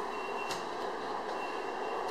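Steady background noise with two short, faint high beeps about a second apart and a single click about half a second in.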